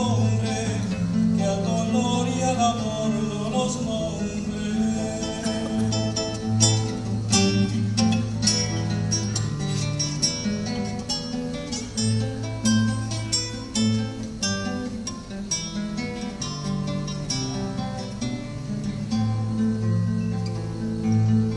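Acoustic guitar playing an instrumental passage between sung verses. Held bass notes sound under quick picked and strummed chords.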